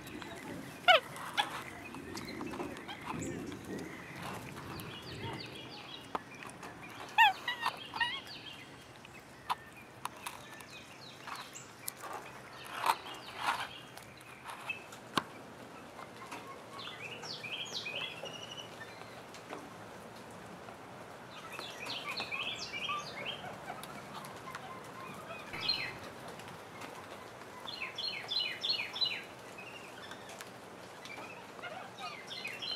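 Animal chirping calls: a few short, loud rising whistles about a second in and again about seven seconds in, then clusters of rapid high chirps that come back every few seconds, the densest burst near the end.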